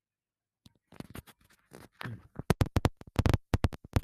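Rapid scratchy crackles and clicks from an earphone's inline microphone being handled, loud at times, mixed with brief fragments of a man's voice. They begin about a second in, after complete silence.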